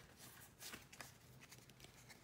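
Faint rustle and a few soft clicks of Pokémon trading cards being slid through a hand-held stack.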